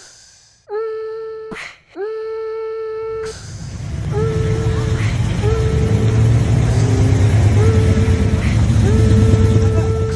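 Butler-built Pontiac 470 V8's exhaust rumble building from about three seconds in and staying loud as the car drives past and away. A steady held tone on one pitch sounds seven times, each about a second long: three times alone at first, then over the rumble.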